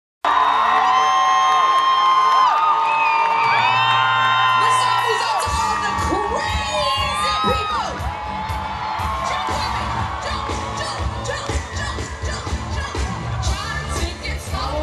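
Large concert crowd screaming and cheering, with many overlapping high-pitched shrieks. About five seconds in, deep bass from the stage music comes in under the cheering.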